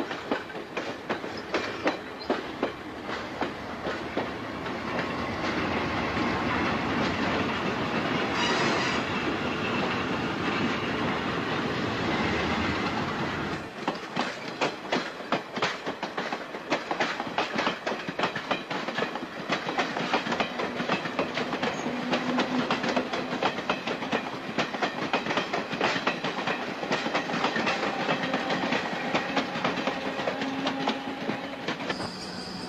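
Stainless-steel electric commuter train cars passing close by, wheels clicking rapidly over the rail joints. About halfway through, the deep rumble drops away and a lighter run of clicking goes on.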